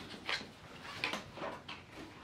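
Plastic cards and a slim card-holder wallet being handled on a desk: four or five short, faint clicks and rubs.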